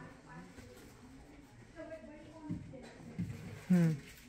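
Low room sound with faint voices talking in the background, then a woman's short "hmm" near the end.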